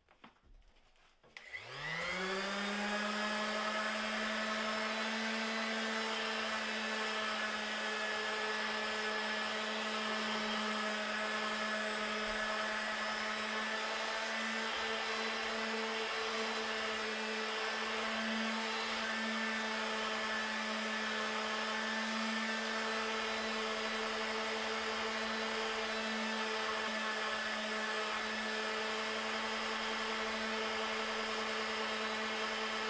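Corded electric random orbital sander starting up about a second and a half in, its motor rising quickly to a steady running whine. It then runs evenly while sanding an aluminium hydrofoil fuselage with 120-grit paper.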